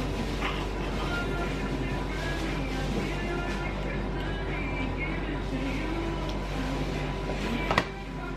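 Background music at a steady, moderate level, with no sharp sounds standing out.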